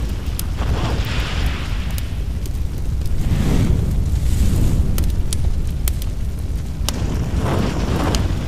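Fire sound effects for an animated intro: a steady deep rumble of flames with scattered sharp crackles, swelling a few times.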